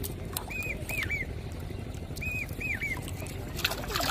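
High chirping calls in groups of three quick arched notes, repeating about every two seconds over a steady low rumble. Near the end comes a short burst of splashing as the line pole is pulled through the water.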